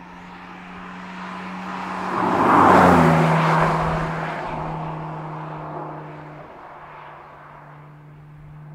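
Porsche 718 Cayman GT4 RS's naturally aspirated 4.0-litre flat-six driving past: the engine note swells to a peak about three seconds in, drops in pitch as the car passes, then fades away.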